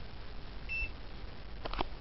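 UNI-T digital clamp meter giving one short, high electronic beep about two-thirds of a second in, the key-press beep as it is switched to DC. A couple of sharp clicks follow near the end.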